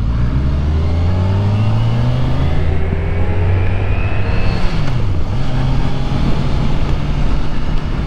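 Kawasaki Ninja 1000SX's inline four-cylinder engine accelerating away from a stop, its pitch rising for about four seconds. About five seconds in the pitch drops briefly at an upshift, then the engine pulls on steadily in the next gear.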